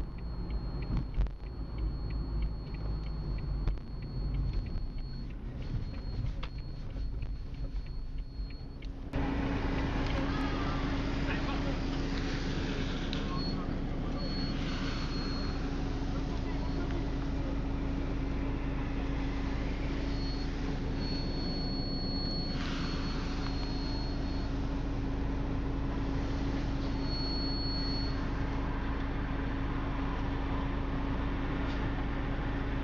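Road-vehicle noise. About nine seconds in it changes abruptly to a steady, louder noise with a constant low hum.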